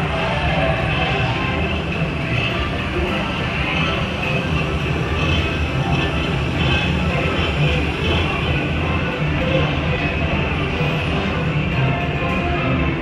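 Dark-ride soundtrack music playing over the steady low rumble of the tour ride vehicle moving along its track.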